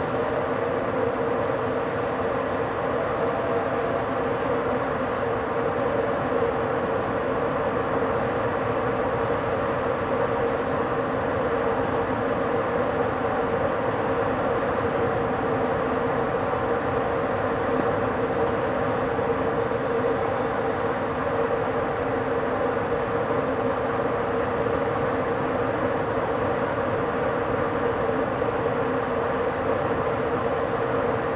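Steady running noise of an ÖBB electric intercity train at about 100 km/h, heard from the driver's cab: wheels rolling on continuous rail with an even hum and no distinct clicks.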